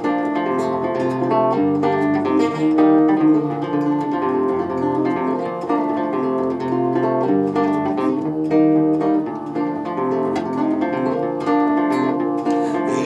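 Solo nylon-string guitar playing an instrumental passage: a steady run of plucked melody notes over changing bass notes.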